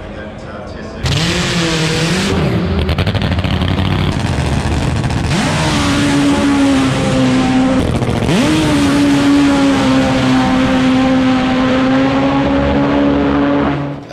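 Supercharged, nitro-burning Top Fuel drag motorcycle engine at full throttle on a pass run entirely in first gear at high revs. It comes in suddenly and loud about a second in, its pitch climbs twice, then it holds at a steady high pitch until it stops at the end.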